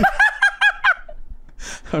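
A man laughing hard in a quick run of high-pitched bursts, about six in the first second, then trailing off.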